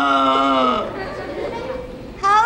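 A puppeteer's character voice holding one long, steady, drawn-out note that breaks off just under a second in, followed by quieter, broken vocal sounds.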